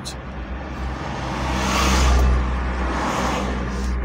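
Engine and tyre noise of a moving car heard from inside the cabin, steady underneath, with a swell of rumble and rushing about two seconds in as another car passes close alongside.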